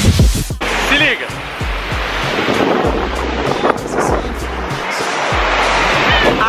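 Sea surf breaking on a sandy beach, a steady rushing wash of waves. It follows a song with singing that cuts off about half a second in.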